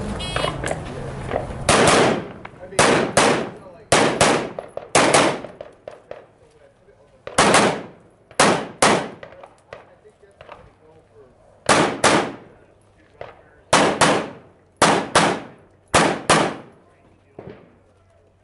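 A competition pistol fired about twenty times, mostly in quick double shots with pauses of a second or two between groups. Each shot is a sharp, loud crack.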